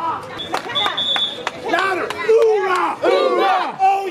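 A crowd of people shouting and cheering together in repeated loud calls, with a brief steady high tone about half a second in.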